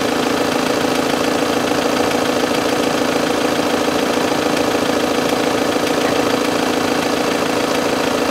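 A steady mechanical hum that holds one pitch without rising or falling.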